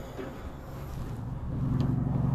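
A low, steady motor hum that grows louder through the second half.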